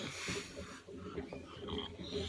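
A person's breath and snort-like nasal noise close to a phone microphone, with rustling as he moves. A breathy rush fills the first second, then low shuffling noise.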